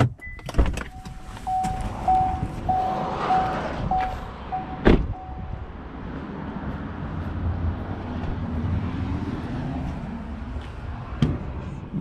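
A car's door-open warning chime beeps about twice a second, some eight or nine times, as the driver's door stands open. The door is then shut with a single loud thump about five seconds in. A steady low rush of wind noise follows.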